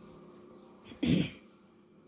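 A person clearing their throat once, a short, sharp burst about a second in, much louder than the quiet background.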